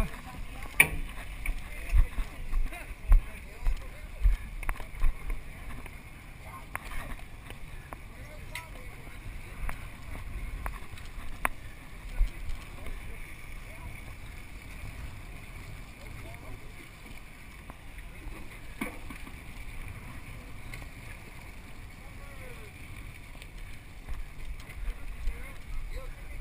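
Fishing boat's engine running steadily, with wind gusting on the microphone over the first several seconds.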